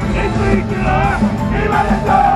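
Japanese idol pop song performed live: female voices singing a melody over an up-tempo track with a steady beat.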